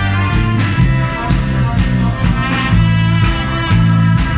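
Live band music through the stage PA: acoustic guitar strumming over a bass line and drums keeping a steady beat.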